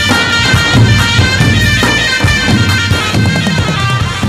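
Festive band music led by clarinets playing a reedy, sustained melody over a steady drum beat.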